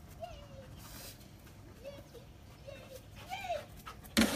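A dog whining softly: about four short, high whines, each rising and falling in pitch.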